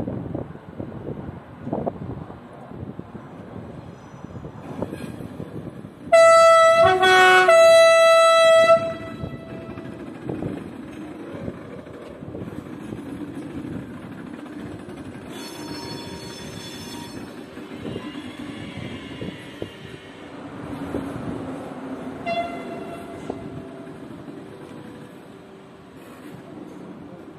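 Orange TGV Sud-Est high-speed train rolling slowly over the tracks with a steady rumble. About six seconds in it sounds a loud two-tone horn for about two and a half seconds, high, then low, then high again. A faint high squeal follows around sixteen seconds in, and a short, weaker toot of the horn near twenty-two seconds.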